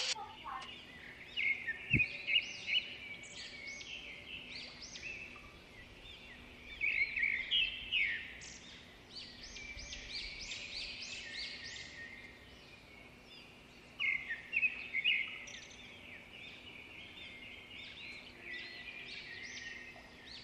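Tropical rainforest ambience: birds chirping and calling in bursts of quick, rising notes, with quieter stretches between the bursts.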